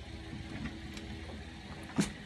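Low steady background hum with faint handling noise as a USB charging cable's plug is fitted into a handheld radio's port, ending in one sharp click.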